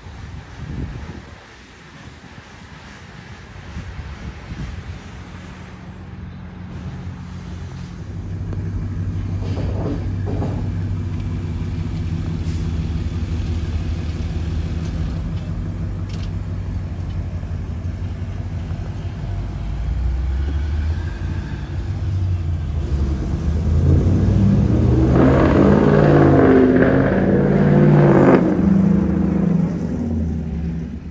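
Ram R/T pickup's Hemi V8 engine and exhaust, running steadily at low revs as the truck drives, then revving higher and louder in the last several seconds as it pulls away.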